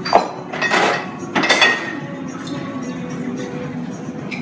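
Background music playing steadily, with three sharp clinks of glass and metal barware in the first second and a half as bottles and bar tools are handled.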